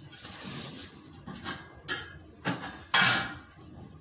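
Kitchenware clattering against aluminium cooking pots: a few sharp knocks and clinks, the last and loudest, a brief scraping clatter, about three seconds in.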